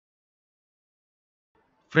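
Silence, then a man's voice begins a spoken word just before the end.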